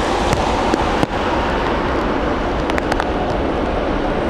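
Steady roar of a widebody jet airliner rolling out after touchdown on a wet, rain-soaked runway, blended with rain hiss. A few sharp ticks, with one louder knock about a second in.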